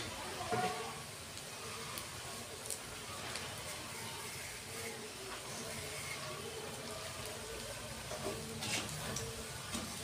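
Moong dal mangochi fritters deep-frying in hot oil in a kadhai: a steady sizzle, with a few light clicks of the slotted spoon, most of them near the end as the fritters are turned.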